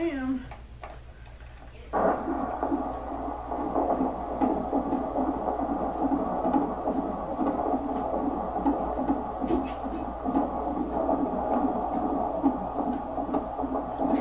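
A baby's fetal heartbeat heard through a handheld Doppler monitor's speaker: a fast, rhythmic whooshing pulse. It cuts in about two seconds in after a quieter stretch while the probe is placed, and it is a normal heartbeat that sounds perfect.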